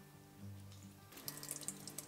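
Milk pouring from a glass bottle into a steel saucepan, a faint liquid trickle that starts about a second in, over soft background music.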